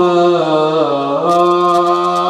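A man's voice reciting an Arabic Quranic verse in a slow, melodic chant through a microphone, holding long notes that bend and step down in pitch.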